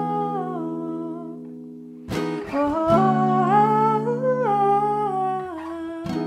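A woman humming a wordless melody to her own Epiphone acoustic guitar. A held note slides down and fades in the first second and a half; then the guitar is strummed about two seconds in and a new hummed line wavers up and back down, with another strum at the end.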